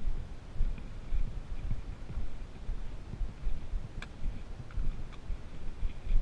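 A hiker's footsteps on a dirt forest trail, with trekking poles planting, heard as uneven low thumps. A sharp click about four seconds in, and smaller ones soon after, fit a pole tip striking rock.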